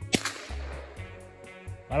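A sudden sharp swish just after the start, fading away over about half a second, over background music with a steady beat. A voice begins right at the end.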